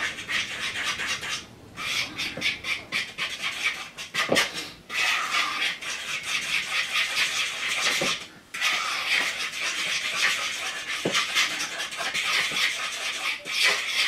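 Cobbler batter being stirred briskly by hand in a mixing bowl: a quick run of repeated scraping strokes against the bowl, with two short pauses.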